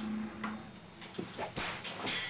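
A quiet room with a low steady hum that fades after about half a second, then a few faint clicks and knocks in the second half.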